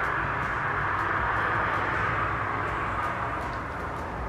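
Thick protein shake pouring from a blender cup into a glass mason jar, a steady stream of liquid that eases off slightly near the end as the jar fills.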